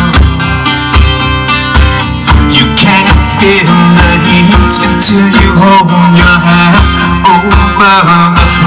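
Amplified acoustic guitar strummed live in a steady rhythm through a PA. A wavering higher melody line joins over the strumming about three seconds in.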